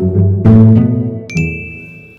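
Short musical transition sting: low held chords, then a bright high ding about one and a half seconds in that rings on.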